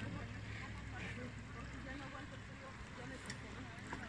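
Quiet open-air ambience: a low, steady rumble under faint distant voices.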